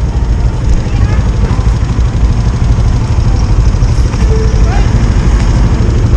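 Motorcycle engine idling with a steady low rumble, with faint voices in the background.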